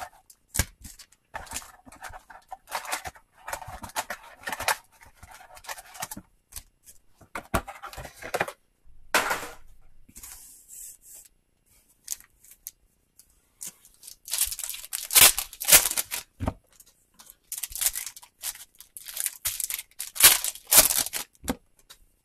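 Hands opening a trading-card box and handling its stack of foil card packs, in irregular bursts of crinkling, tearing and rustling of wrapper and cardboard. There is a quieter stretch about halfway through, then denser rustling near the end.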